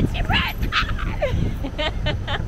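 A woman's excited, high-pitched yelps and squeals, short and choppy, over low street noise.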